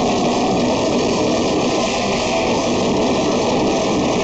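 A metal band playing live, heard as a loud, dense, steady wall of distorted guitar and drums with no clear separate notes.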